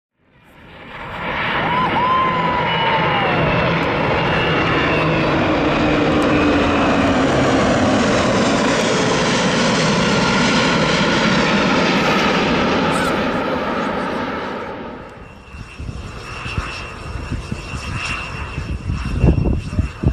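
Two Airbus A340 airliners and smaller escorting aircraft making a low formation flyover: a loud, steady jet roar that builds over the first second, holds, and fades away about 15 seconds in. A quieter, uneven engine and wind noise follows near the end.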